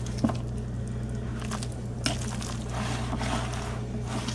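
Wet squishing of mayonnaise-coated bow-tie pasta salad being mixed in a glass bowl, with a few faint light clicks, over a steady low hum.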